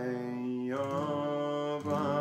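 A man singing a long held note of a Welsh folk song over strummed acoustic guitar, his voice sliding up in pitch a little before a second in.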